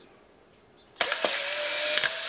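Polaroid SX-70 Land Camera's motor running for just over a second, with a steady whine, as it ejects the new film pack's dark slide after the film door is shut. It starts with a click about a second in and cuts off abruptly.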